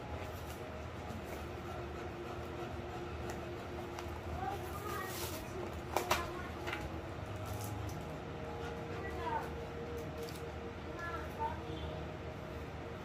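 Cardboard snack box and foil chip pouch being opened and handled, with a sharp rip or click about six seconds in, over a steady low hum.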